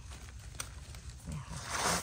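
Dry leaf litter rustling as gloved hands dig a mushroom out of the forest floor with a small knife, with a single click early on and a louder rustle near the end.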